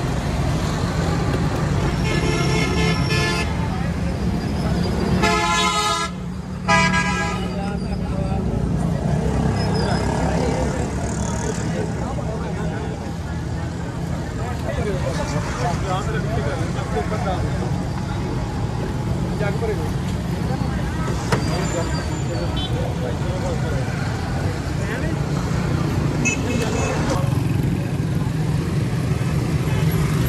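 Busy street traffic with a steady low engine hum and vehicle horns honking three times in the first eight seconds, under the murmur of a crowd talking.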